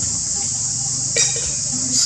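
Steady high-pitched chorus of insects, with a brief sharp sound a little over a second in.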